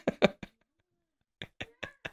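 A man laughing: a quick run of short chuckles, a pause of about a second, then a few softer, breathy laughs.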